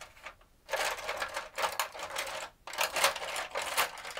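A handful of paintbrushes rattling and clicking against each other and the brush tray as a hand rummages through them for a short flat brush. The clatter starts about a second in and runs on with one brief pause.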